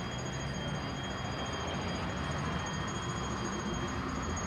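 Steady street background noise, an even hiss-like wash with no distinct events, and a faint high steady whine above it.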